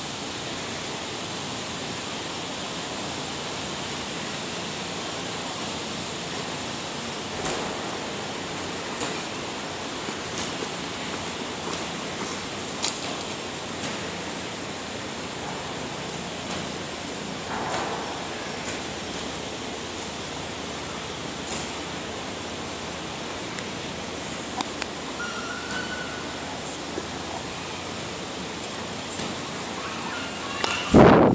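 Steady outdoor background hiss, with scattered faint clicks and rustles from about a quarter of the way in and a short high tone a little later.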